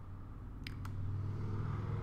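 Two quick keystrokes on a computer keyboard, a little under a second in, over a steady low hum.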